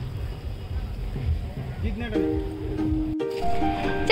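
Low rumbling noise on the phone microphone for about two seconds, then background music with sustained notes comes in, broken by an abrupt edit cut a second later.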